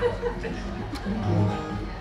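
Acoustic guitar played quietly, its chords ringing on and changing a few times.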